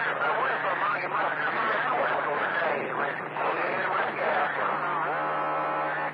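CB radio receiving skip on channel 28: garbled, overlapping voices through the radio's speaker over a steady low hum. Near the end a steady tone is held for about a second, racket that the operator takes for another station keying up.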